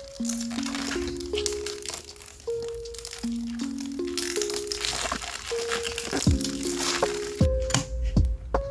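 Background music with a simple stepped melody, over the crinkling of thin plastic protective film being peeled off a clear acrylic tablet case. A few sharp knocks come near the end as the tablet is handled and set down on a wooden desk.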